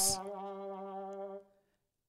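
A person's long held hum, one steady 'mmm' at a single pitch, a drawn-out pause sound mid-sentence, that stops about a second and a half in.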